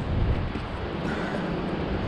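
Steady low rumble with an even hiss: wind on the microphone mixed with ocean surf.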